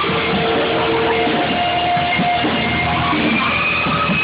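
A five-piece rock band (electric guitar, saxophone, keyboards, drum kit) playing live, with long held notes over a steady, loud band sound.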